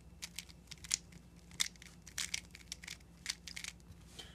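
A 3x3 speedcube's plastic layers being turned quickly through an A-perm algorithm: an uneven run of about a dozen short, sharp clicks and clacks.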